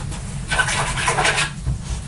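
Watercolor brush bristles scrubbing against a surface, a brief scratchy rubbing about a second long, over a steady low hum.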